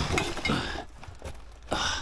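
Rustling and scraping as a car's carpeted boot floor panel is lifted by hand, with a few light knocks, and a louder scrape near the end.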